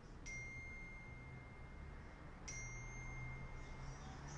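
A bell-like chime struck twice, about two seconds apart, each strike a clear ringing tone at the same pitch that sustains until the next.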